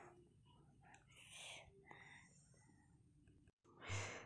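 Near silence, with faint whispered voices about a second and a half in.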